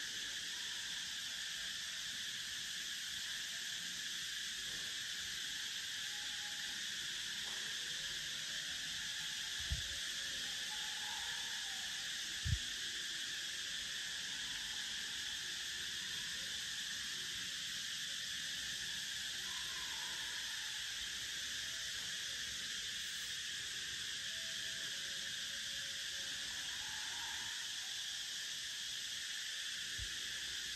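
Steady high-pitched chorus of insects, even throughout, with two faint low thumps about ten and twelve seconds in.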